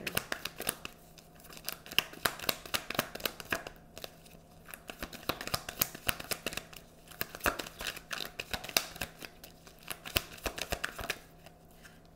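A tarot deck being shuffled by hand: quick runs of crisp card clicks and riffles, broken by a few brief pauses.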